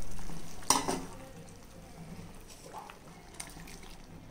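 Crab soup bubbling at a hard boil in an aluminium pot on a gas stove, with one sharp metal clink a little under a second in. The bubbling is loudest during the first second and then settles to a steady, quieter level.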